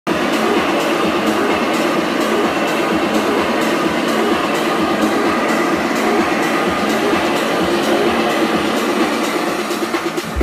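Loud techno played over a big sound system with its bass filtered out: a dense, noisy build-up with a faint beat about twice a second.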